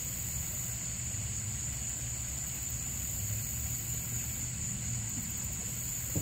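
A steady low motor-like hum with a constant high-pitched whine above it, unchanging throughout.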